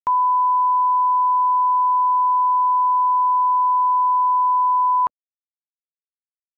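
Broadcast line-up tone: a single steady 1 kHz reference tone sounding with colour bars, used to set audio levels. It holds at one pitch for about five seconds and then cuts off suddenly.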